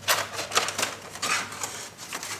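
Thin plastic nursery containers clattering as they are handled: a quick run of short clicks and knocks.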